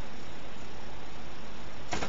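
Steady, even hiss with nothing else in it: the recording's constant background noise.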